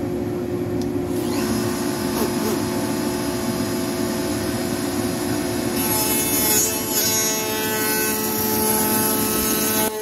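Table-mounted router running with its bearing-guided bit spinning. From about six seconds in, the bit cuts along the edge of a wooden board fed past it with a push block, adding a loud, high-pitched cutting noise. The cutting noise stops abruptly at the end as the board clears the bit.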